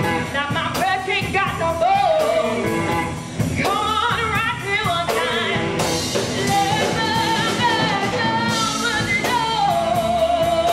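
Live blues band: a woman sings long, wavering held notes over electric guitars, bass guitar and a drum kit keeping a steady beat.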